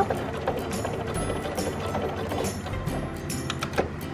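Electric sewing machine running at a steady speed, its needle mechanism clicking rapidly as it stitches a straight line through webbing and fabric.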